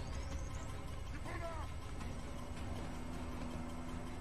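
The show's soundtrack playing quietly underneath: a low steady rumble, with a short faint voice about a second in and a faint steady hum in the second half.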